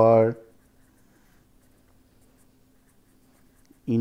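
Felt-tip pen writing on paper, faint scratching strokes.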